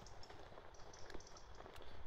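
Faint footsteps and handling noise from a handheld camera while walking, over a low steady rumble with a few soft, irregular ticks.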